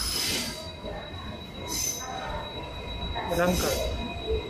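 DEMU passenger train heard from inside the coach as it slows into a station: a steady running rumble with thin, high, held wheel-and-brake squeal tones, broken by two short hissing bursts.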